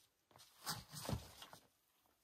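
Climbing shoes scuffing and scraping on a sandstone boulder as a climber shifts his feet and steps up onto the rock: a short cluster of scrapes lasting about a second.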